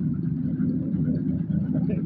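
A brick-making machine's engine running steadily, a continuous low rumble.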